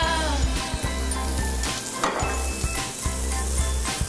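Mushrooms sizzling as they fry in a pan with oil and butter, with flour just added. Background music with a steady bass line plays over it.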